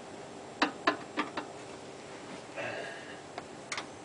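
Sharp metallic clicks and taps of a flathead screwdriver working the screws on a garbage disposal's drain-pipe fitting: four quick clicks in the first second and a half, a short scrape a little after the middle, then two more clicks.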